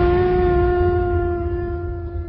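A werewolf's long howl, held at one steady pitch and slowly fading near the end, over a low rumble.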